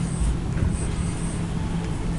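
Marker pen writing on a whiteboard, faint short strokes, over a steady low background rumble.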